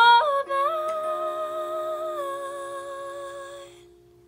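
A woman's voice holding the final note of a song, hummed with a slow vibrato and fading out over about three and a half seconds, over a steady held chord that rings on a moment longer.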